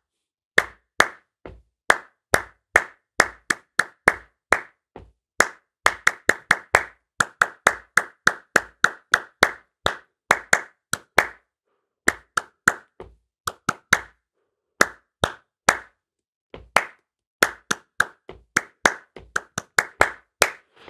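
Hand claps tapping out a written rhythm in 3/4 time, mixing quarters, eighths, triplets and sixteenths, with a few short gaps for rests, over a steady bass drum beat marking the pulse.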